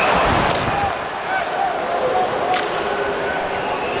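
Hockey arena crowd noise, louder for the first second and then a lower murmur, with a sharp knock about two and a half seconds in.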